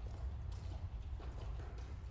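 Badminton players' footsteps on a sports hall floor: a few soft, irregular steps between rallies, over a steady low rumble.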